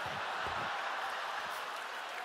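A theatre audience laughing together, a steady wash of crowd laughter with no break.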